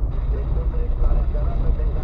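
Low, steady in-cabin rumble of a car's engine and tyres on a rough unpaved road, with faint talk over it.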